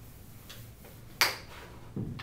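A sharp click about a second in, with a fainter click before it and a dull knock at the end: chalk or a board eraser being handled against a chalkboard and its chalk tray.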